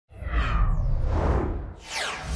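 Whoosh sound effects over a deep rumble, the sting of an animated logo intro. One long sweep fades out near the end, and a second whoosh swells up just before it ends.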